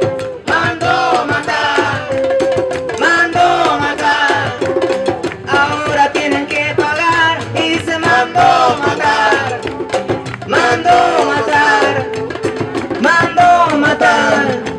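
Live acoustic folk band playing: strummed acoustic guitars and a leather hand drum struck with a stick keep a steady rhythm under singing.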